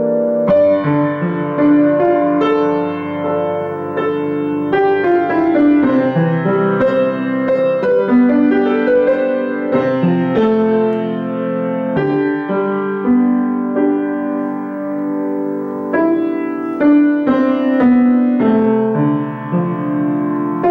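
Acoustic grand piano being played in a loose, improvised way, chords and melody notes struck one after another and left ringing into each other.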